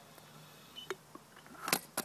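Quiet background with a faint click a little under a second in and a short, sharp click near the end.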